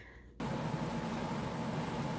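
Steady background hiss with a low hum, starting suddenly about half a second in: room noise on a played-back livestream's audio.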